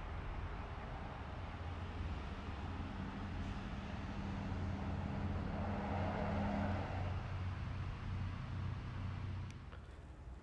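A car passing on the street, its engine and tyre noise building to a peak about six seconds in and then fading away.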